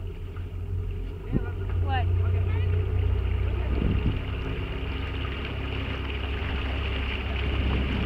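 Motorboat engine running at low speed, a steady low drone that grows a little louder about two seconds in.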